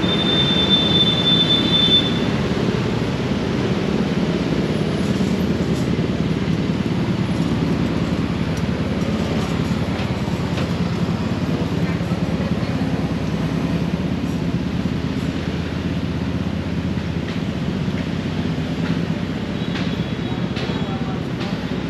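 Steady city street traffic noise, the rumble of motorbikes and cars running by close at hand, with a thin high whine for the first two seconds.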